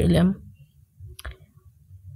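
A narrator's voice finishes a phrase in the first half second, then a single sharp click a little over a second in, over a faint low rumble.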